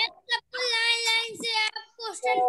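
A child's voice holding one high, steady note for about a second, sung or drawn out, after a brief sound just before it.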